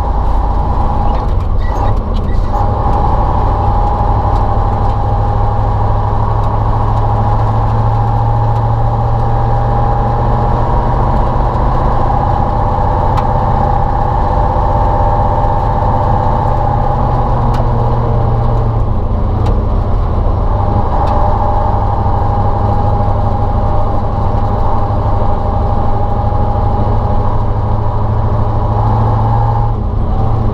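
Ural logging truck's YaMZ-238 V8 diesel running steadily while driving, heard close up from the hood.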